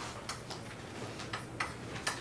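Chalk writing on a blackboard: short, sharp, irregular taps and scratches of the chalk, a few every second.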